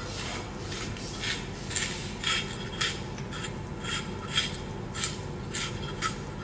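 A carrot being twisted through a hand-held stainless steel spiral slicer, the blade shaving off spiral strips in a steady series of short cutting strokes, about two a second.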